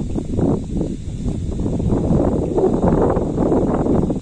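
Wind buffeting the microphone on an exposed hilltop, a loud, uneven low rumble that rises and falls in gusts.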